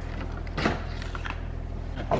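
Light clicks and knocks from a Toyota MR2's plastic dashboard being worked loose by hand, over a steady low hum.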